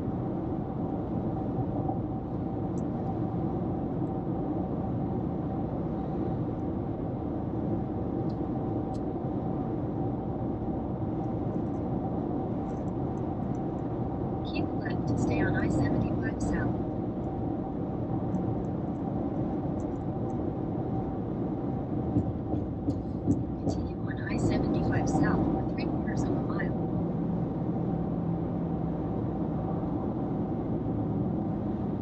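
Steady road and engine noise inside a car cabin at highway speed, with a constant low hum. Twice, near the middle and again later, brief voice-like sounds rise above it.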